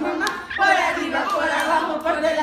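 A group of children chanting and shouting together, many voices at once.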